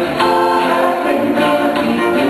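A live band playing, led by electric guitar with drums, with held, choir-like sung notes over it.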